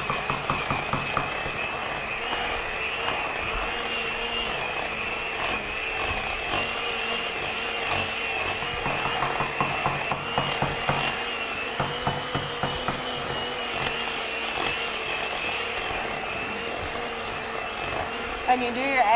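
Electric hand mixer running steadily at one speed, its beaters creaming butter and sugar in a glass bowl, with scattered light clicks and knocks.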